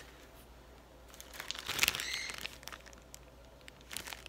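Plastic bag and folded paper slip rustling and crinkling as a number slip is pulled out and unfolded, starting about a second in and loudest around the middle.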